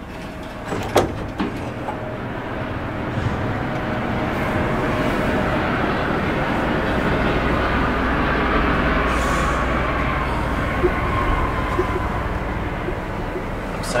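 A roughly 100-year-old TITAN traction freight elevator travelling, with a steady rumble and whirr from the car and its hoist machinery. There is a sharp click about a second in, as it sets off. It runs slowly and smoothly.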